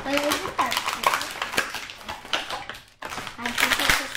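Thin plastic bag and plastic toy wrapping crinkling and rustling as hands rummage in them, with a short spoken word at the start.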